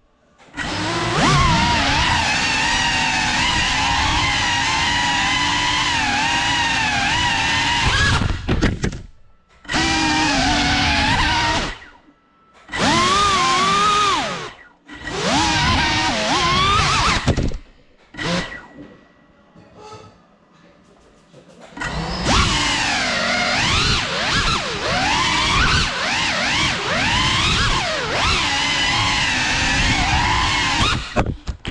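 Cinelog 35 cinewhoop FPV drone's motors and propellers whining, the pitch rising and falling as the throttle changes. It drops out briefly several times and goes nearly quiet for a few seconds about two-thirds through before spooling back up.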